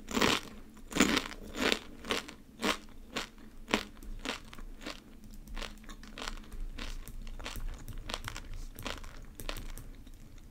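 Close-miked chewing of a crunchy snack: several loud, separate crunches in the first few seconds, then softer, quicker crunching.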